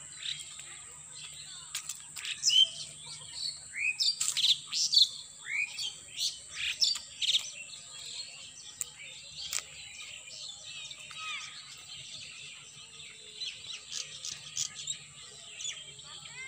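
Several birds chirping and calling in short, quick notes, busiest in the first half, over a steady high-pitched hiss.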